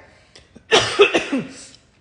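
A woman coughs twice in quick succession, starting about three-quarters of a second in. She puts the cough down to her allergy to dogs.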